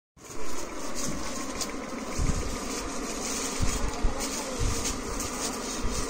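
Steady buzzing background hum, with several dull low thumps during the middle seconds.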